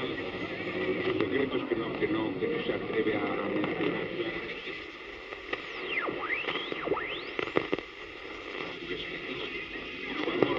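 Medium-wave broadcast on a portable AM radio: a distant station's voice comes through a constant hiss of static. About halfway through, a few whistles sweep down in pitch and then back up, the heterodyne whistles of the tuning passing across other stations' carriers, before the voice returns.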